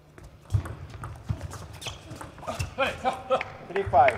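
Table tennis ball clicking back and forth off the bats and the table in a rally, a sharp click every third of a second or so, with a raised voice in the second half.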